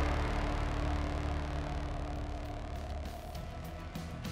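Background music fading out.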